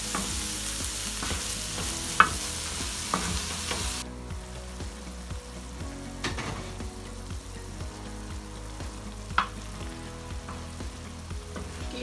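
Keema (minced meat) sizzling on a large iron tawa while a wooden spatula stirs and scrapes it, with a few sharp knocks of the spatula on the iron. The mince is letting out its own water as it fries, so it steams and hisses. The sizzle is loud for the first four seconds, then drops suddenly to a softer sizzle.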